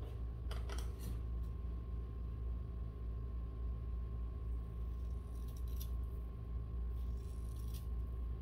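Hair-cutting scissors snipping through a section of long hair: a few short snips about half a second in, then more near the end, over a steady low hum.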